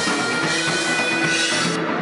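Live rock band playing electric guitar, bass guitar and drum kit, with a cymbal wash that drops out near the end.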